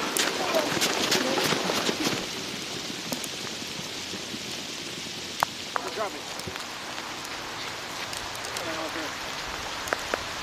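Boots crunching over snow as log-carrying Marines pass close by in the first two seconds, then a steady pattering hiss with a few scattered clicks and faint, distant voices now and then.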